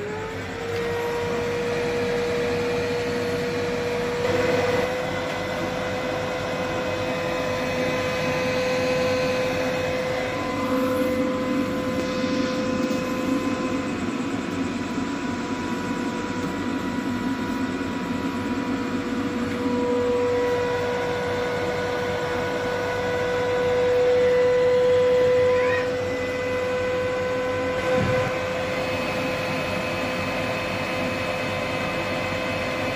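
A 1500-watt UPS inverter running off a 12-volt battery, giving a steady high hum that rises in pitch as it comes on at the start and then holds. It swells louder for a few seconds a little past the middle.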